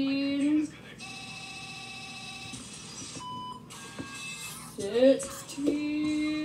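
A girl's voice making a long held note twice, near the start and again near the end. In between there is a steady electronic tone lasting about a second and a half, then a short beep a little past the middle.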